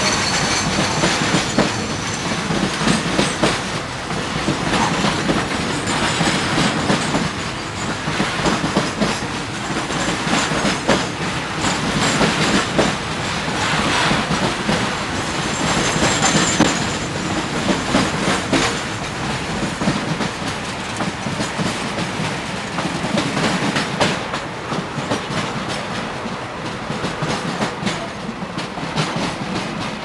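Freight wagons rolling past close by: a steady rumble of steel wheels on rail, with dense clicking as the wheels run over the rail joints.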